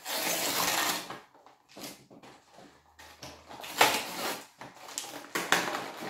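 Plastic and foil toy packaging being pulled open and crinkled by hand: a loud rustle for about a second at the start, then scattered crackles and rustles, with a sharper crackle about four seconds in.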